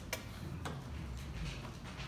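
A sharp click just after the start, a second click about half a second later, then a few fainter clicks and taps over low room noise.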